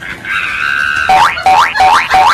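Comedy sound effect: a held electronic tone, then four quick identical rising 'boing' sweeps, about three a second.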